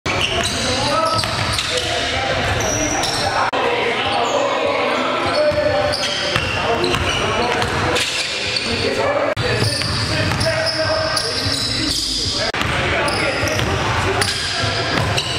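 A basketball being dribbled and bounced on a hardwood gym floor, giving irregular thuds, under voices that echo around a large hall.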